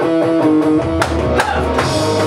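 A rock band playing: electric guitar holding chords over bass, with drum strikes from an electronic drum kit coming in about a second in and twice more after.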